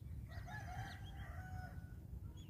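A rooster crowing once, a single call lasting about a second and a half.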